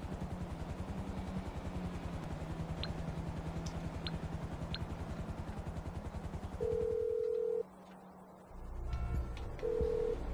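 A video-game mobile phone placing a call: a few soft menu clicks, then a steady ringback tone lasting about a second, and again just before the end. A rapid, even low pulsing hum runs underneath for most of it and stops near the first tone.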